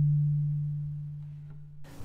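A low acoustic guitar note ringing on and slowly dying away.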